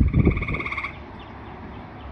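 A frog's pulsed trill call, one call lasting just under a second, with a low thump at the very start.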